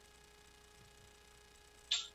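Near silence on a video-call audio line: a faint steady hum, with a brief soft hiss near the end.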